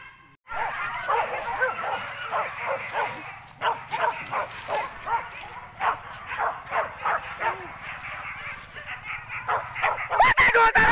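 Hunting dogs used for wild boar yelping and barking in quick, repeated short calls, a couple each second, starting about half a second in.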